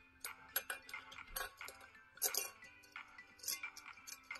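Light, irregular metallic clinks of a small chain-and-tag decanter label rattling against the neck of a cut-glass decanter as it is hung on, over faint background music.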